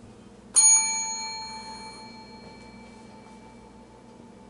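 A bell struck once about half a second in, ringing clearly with bright high overtones and fading away over about two seconds.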